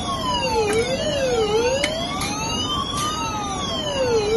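Electronic fire alarm siren wailing: two tones sweep up and down continuously, out of step with each other. This is the fire signal of a fireproof rolling shutter controller, set off by shorting its fire-signal contacts.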